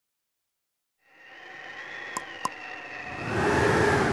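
Silence for about a second, then a rising whoosh of noise, an animation sound effect, with two quick high ticks about halfway through; it swells louder towards the end.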